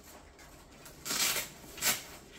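Zipper of a padded guitar gig bag being drawn open: a half-second zip about a second in, then a shorter one near the end.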